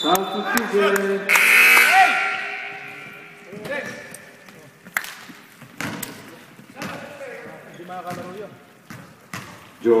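A basketball bouncing on a hardwood gym floor, a handful of sharp bounces roughly a second apart with echo off the hall, among players' shouts and voices that are loudest in the first two seconds.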